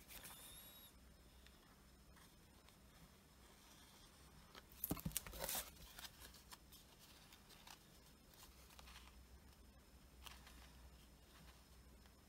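Quiet handling of paper card pieces: light rustles and taps as strips are positioned and glued, with a short louder burst of paper rustling about five seconds in.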